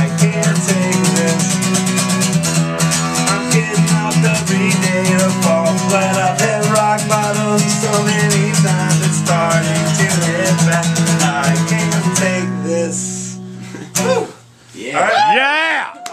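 Acoustic guitar strummed fast and steadily over a ringing low note, closing out the song and dying away about twelve to fourteen seconds in. Near the end a voice calls out.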